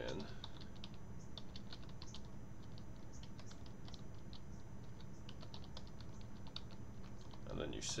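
Computer keyboard being typed on: quick, irregularly spaced keystroke clicks over a steady low background hum.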